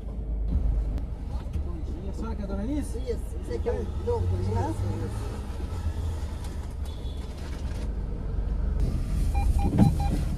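Low steady rumble of a car idling, heard from inside the cabin, with faint muffled voices in the first half and a thump near the end as passengers get in.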